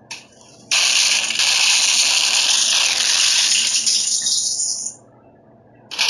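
A loud, steady rushing hiss starts suddenly under a second in, lasts about four seconds, and dies away just before the end.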